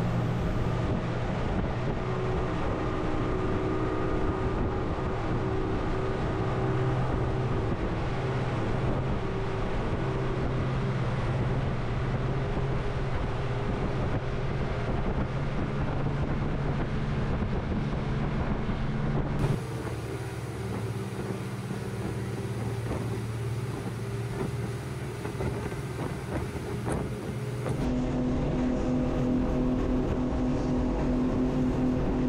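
Motorboat engine running steadily under way, a low even drone with wash and wind noise; partway through the sound changes for several seconds to a thinner, quieter engine sound before the drone returns.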